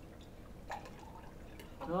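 Hydrochloric acid being poured from a glass bottle into a glass graduated cylinder of solution: faint liquid sounds, with a light click about two-thirds of a second in.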